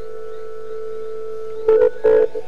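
A software synthesizer, the LMMS TripleOscillator, holds one steady, nearly pure tone. Near the end, struck, pitched music notes come in.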